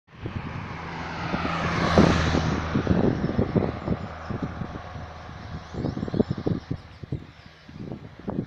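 A motor vehicle passing close by: its engine and tyre noise swell to a peak about two seconds in and fade over the next two seconds. Wind buffets the microphone in gusts.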